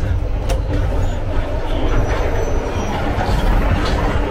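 Steady, loud rumble of a train running on its rails, heard inside the passenger carriage, with two sharp clicks about half a second in and near the end.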